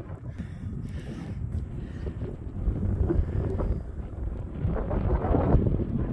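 Wind buffeting the phone's microphone in a snowstorm: an uneven, gusty low rumble.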